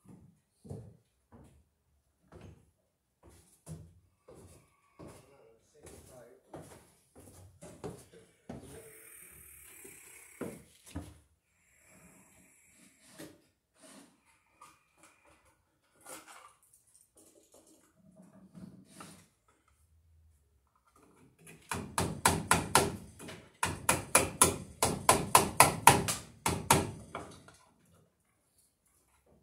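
Hammer driving nails into an old wooden barn post: a rapid run of sharp blows in two bursts near the end, after some scattered knocks and handling noises.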